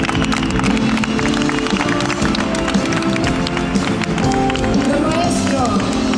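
Live concert music: sustained band chords with a fast ticking rhythm over them, and a voice sliding in pitch near the end.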